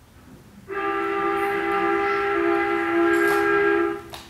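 A loud held chord of several steady tones, like a whistle blast, starting under a second in and cutting off suddenly just before the end.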